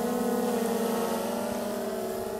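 Autel Evo quadcopter drone's propellers giving a steady, even-pitched buzz as it flies slowly, fading slightly.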